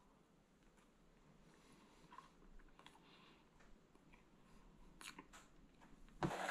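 Near silence with faint, scattered mouth clicks of someone chewing a bite of soft pumpkin quick bread, a few more of them near the end.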